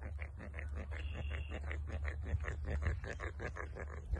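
Worm grunting: a stick rubbed back and forth across the filed notches of another stick driven into the soil, making a quick, even rasping of about six or seven strokes a second. The vibration sent into the ground mimics falling rain and draws earthworms to the surface.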